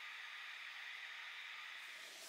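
Faint, steady hiss with no distinct events: room tone or a recording's noise floor.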